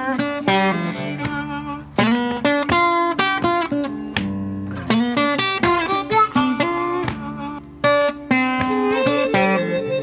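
Solo acoustic blues guitar playing an instrumental passage of picked notes and strummed chords, with a wavering harmonica note coming in near the end.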